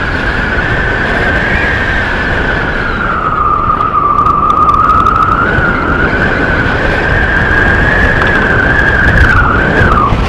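Loud wind buffeting on an action camera's microphone during a tandem paraglider flight, with a steady high whistle over it that wavers in pitch, sags lower in the middle, climbs back and breaks off near the end.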